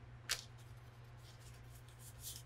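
One light, sharp tick of cardstock being handled and set down on a cutting mat about a third of a second in, then quiet handling over a faint, steady low hum.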